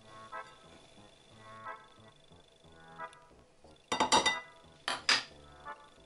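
Hand mixing shredded surimi and grated cheese in a ceramic bowl, with fingers knocking the bowl: a quick cluster of clinks about four seconds in and another about a second later, over faint background music.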